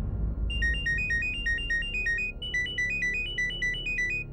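Mobile phone ringtone for an incoming call: a quick electronic melody of short high beeps, played as two phrases, over low background film music.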